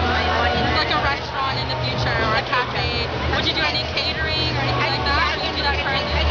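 Women talking in conversation over a steady low hum.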